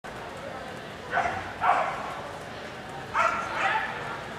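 Dog barking: four short barks in two pairs, the first pair just over a second in and the second about three seconds in.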